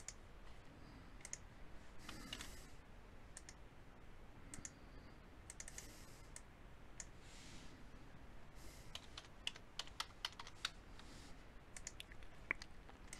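Faint computer keyboard typing and mouse clicks, with a quick run of keystrokes in the latter part as a word is typed.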